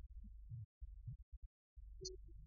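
Faint, muffled bass of a live dangdut band's amplified music, heard only as low thumps with no voice or higher instruments, cutting out to dead silence twice.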